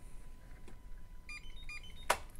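An RFID drawer lock's reader gives a quick run of short electronic beeps at changing pitches about a second and a half in, as a glass-tube RFID chip is held against its coil.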